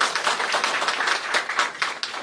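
An audience applauding: many people clapping densely and quickly.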